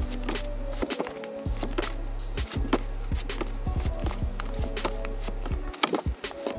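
Large glossy photo prints being flipped through one after another, giving a run of short, sharp paper slaps and rustles over steady background music.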